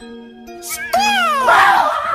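A man's high-pitched scream of fright, starting about two thirds of a second in with a swooping, falling shriek and growing into a loud, rough yell near the end, over steady background music.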